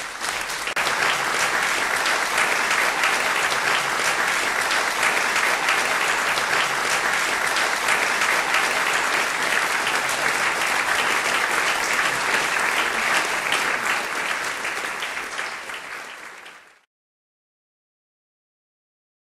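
Audience applauding: dense, steady clapping from a concert crowd right after the piano's last chord, easing slightly and then cutting off abruptly near the end.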